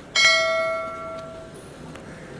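A single bright bell chime, struck once and ringing out over about a second and a half: the notification-bell sound effect of an animated subscribe-button overlay.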